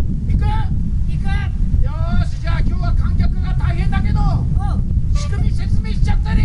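Voices talking, heard through a loud, steady low rumble of wind and heavy rain on the microphone.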